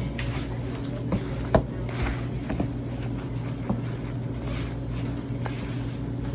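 Gloved hands kneading a thick, stiffening sweet potato and zucchini burger mixture in a plastic bowl, giving irregular soft squelches and slaps. A steady low hum runs underneath.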